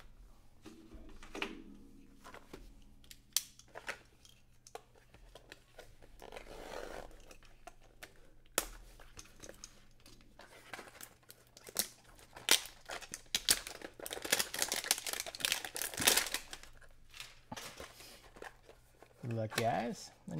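A cardboard trading-card hanger box being handled, with scattered taps and rustles, then several seconds of loud tearing and crinkling in the second half as it is opened.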